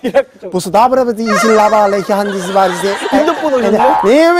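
A man's voice chanting nonsense syllables in a sing-song, mock-foreign announcer style, drawn out into long held notes that bend up and down, starting a little under a second in.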